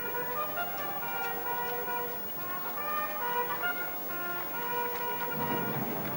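A band playing slow music in long held chords.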